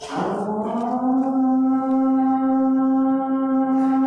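Call to prayer (adhan): a man's voice holding one long chanted note that rises slightly at the start and then stays steady.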